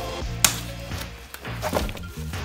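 Background music, with one sharp snap about half a second in from a packing tie on a bike wheel being cut.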